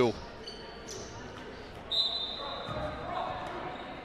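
Indoor basketball gym ambience: a low murmur of crowd and bench chatter with a few faint high squeaks. About two seconds in there is a brief, sharper high tone.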